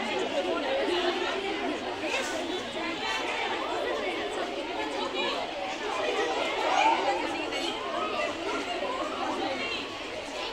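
Chatter of many voices talking over one another, with no single speaker standing out.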